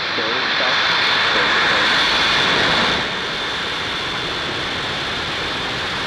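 Falcon 9 first stage's nine Merlin engines firing at liftoff, a steady, loud rush of engine noise. It is a little louder for the first three seconds, then eases slightly and holds.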